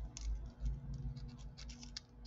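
Small, irregular metal clicks and scrapes of two pairs of jewelry pliers opening and closing a jump ring to attach a clasp, over a low, uneven rumble.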